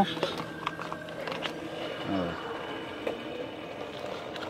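Quiet shop background with a few light clicks and taps of small goods being handled on the shelves, and a brief faint voice about two seconds in.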